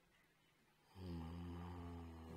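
A man's low, steady hummed "mmm" that starts about a second in and is held at one pitch, a hesitation sound made while reading from his notes.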